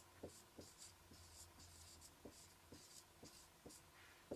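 Faint marker pen writing on a whiteboard: a run of short scratchy strokes with light taps as each letter is put down.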